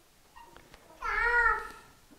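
A single short, high-pitched, meow-like cry about a second in, wavering slightly in pitch, with a few faint ticks before it.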